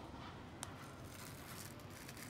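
Demko AD10 folding knife blade cutting slowly through thick, hard-use gun-holster material: a faint cutting sound, with one sharp click about half a second in.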